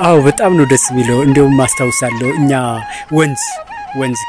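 A voice singing or chanting with wide, swooping rises and falls in pitch, over a steady stepped melody line held underneath.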